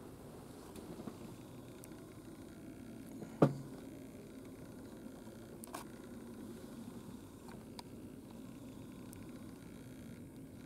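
A single sharp knock about a third of the way in, over a low steady background hum, with a few faint ticks after it.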